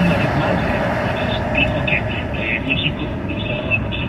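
Steady road and tyre noise inside a car cruising at highway speed, with talk-radio voices faint underneath.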